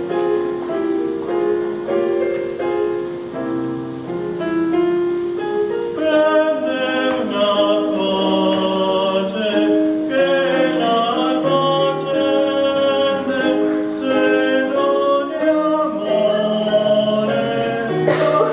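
A man singing solo with piano accompaniment. The piano plays alone at first, and the voice comes in about six seconds in, singing sustained notes with vibrato.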